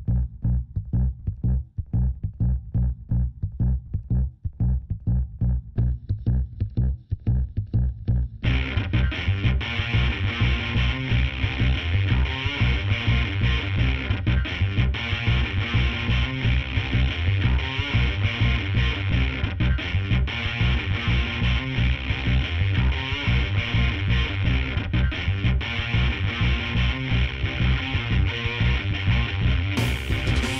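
Background music with a pulsing beat, joined about eight seconds in by guitar.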